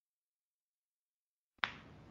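Dead silence, then a single sharp click about one and a half seconds in as the audio track cuts back in, followed by faint hiss.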